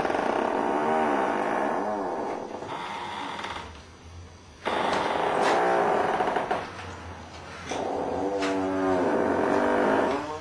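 Loud blaring trumpet blasts: long notes whose pitch repeatedly slides up and down, in two spells with a quieter lull just before the middle.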